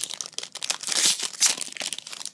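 Foil Pokémon TCG Plasma Storm booster pack crinkling in the hands as it is handled, a dense run of short crackles, loudest about a second in.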